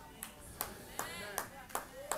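A few faint, evenly spaced hand claps, about five of them a little under half a second apart, from a worshipper in the congregation.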